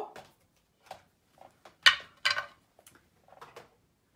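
Objects being handled and set down on a wooden tabletop: two sharp knocks about halfway through, half a second apart, among faint ticks and rustles.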